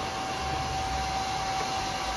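A small electric appliance running steadily: an airy rushing hiss with a steady mid-pitched whine through it.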